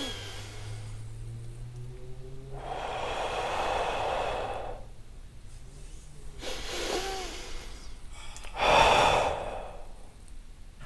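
A man practising the flushing-breath exercise, breathing audibly through nose and mouth: one long breath of about two seconds, a shorter one a few seconds later, and a louder one near the end.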